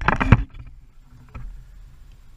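Handling noise of a small action camera being fixed to a goal crossbar: quick knocks and rubbing of fingers on the camera housing, stopping about half a second in. After that only a faint low background with one light tap.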